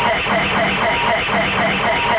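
Electronic dance music from a live rave DJ set: a fast repeating riff of short falling synth notes, about six a second, over a low bass note that recurs about once a second.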